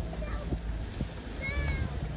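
Pea plants in a silage crop popping against a vehicle as it drives through the field: a few sharp pops over the vehicle's low, steady rumble. A brief high-pitched cry rises and falls about one and a half seconds in.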